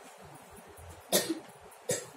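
A person coughing twice in a small room, once just after a second in and once more near the end.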